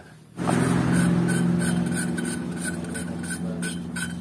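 Motorcycle cylinder-head valve being lapped into its seat with grinding compound: a rasping grind of valve face against seat repeating about three times a second over a steady hum, starting about half a second in.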